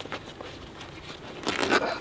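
Faint rustling and scraping as the fabric cover of a shot flexible body armor plate is pulled open by hand, a little louder near the end.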